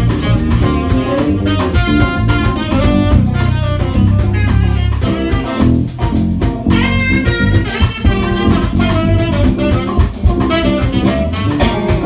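Small live jazz band playing: tenor saxophone, guitar, bass guitar, drums and piano, with busy melodic runs over a steady drum-kit beat.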